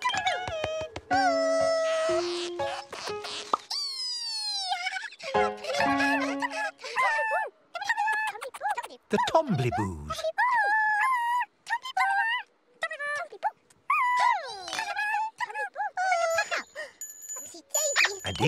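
Soundtrack of a children's TV show: cartoon character voices calling and babbling over gentle children's music, with a falling swoop about four seconds in.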